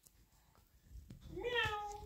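A single high-pitched, drawn-out vocal call starting about a second and a half in, rising briefly and then held steady until it breaks off.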